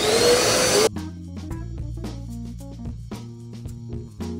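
Upright vacuum cleaner running loud with a rising whine for about a second, then cut off suddenly. Background music with a steady beat and plucked notes follows.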